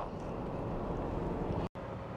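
Steady low rumble of a car heard from inside its cabin, broken by a sudden cut to silence near the end, after which a similar low rumble resumes.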